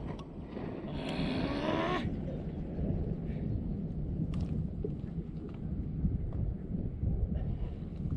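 Wind rumbling on the microphone, with a brief hissing sound that rises in pitch about a second in.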